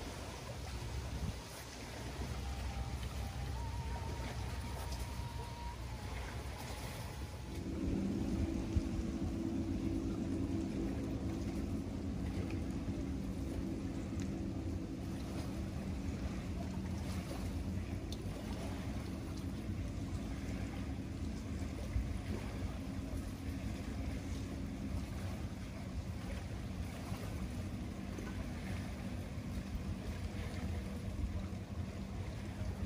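Wind rumbling on the microphone, joined about eight seconds in by the steady hum of a distant motorboat engine, which fades out a few seconds before the end.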